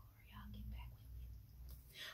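A person's voice, faint and hushed like a whisper, for about the first second, over a low room hum.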